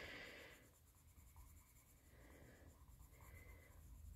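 Faint strokes of a colored pencil shading on card stock.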